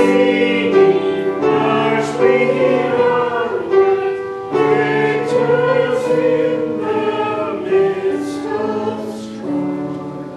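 A choir singing a slow piece in sustained chords, in phrases broken by short pauses for breath.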